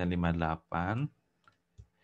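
A man speaking for about the first second, then a few light computer-keyboard key clicks as digits are typed.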